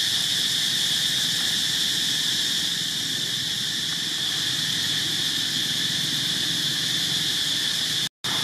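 A steady, high-pitched insect chorus, one unbroken drone that holds the same level.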